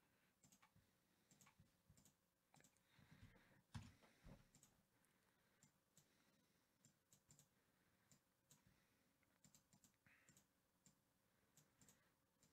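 Faint, scattered clicks of a computer mouse and keyboard over near silence, with a soft thump about four seconds in.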